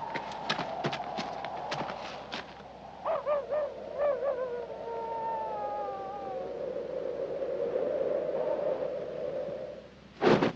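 Wooden fighting staves clacking together in quick, irregular strikes for the first couple of seconds. Then an eerie wavering wail slides slowly downward in pitch and settles into a steady held tone, which fades near the end.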